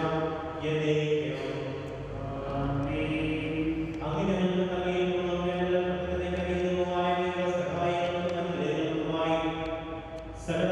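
A liturgical prayer chanted in long, held notes, sung in phrases with brief pauses about two and four seconds in and near the end.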